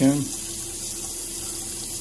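Bathroom sink faucet running steadily into the basin.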